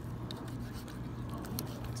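Faint knife-and-hand sounds as a small fillet knife cuts the cheek meat free from a striped bass, with a few light clicks over a steady low hum.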